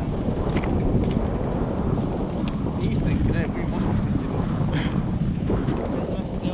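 Steady rush of wind buffeting the microphone of a moving kite buggy riding fast across sand.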